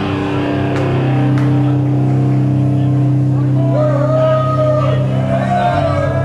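Distorted electric guitars and bass from a live metal band holding a low chord that rings out as a steady drone. A wavering higher tone joins about two-thirds of the way through.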